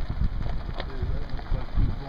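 Uneven low rumble of wind buffeting the camera's microphone, with irregular knocks and a faint murmur of voice.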